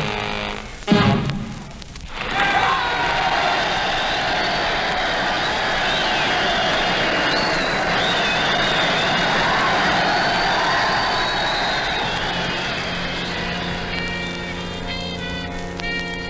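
A big swing dance band ends a number with a final chord about a second in, followed by audience applause and cheering, heard through an old radio broadcast recording. Near the end the band comes back in with held chords leading into the next tune.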